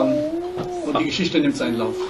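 Speech: a voice holding a long, drawn-out hesitation sound between words.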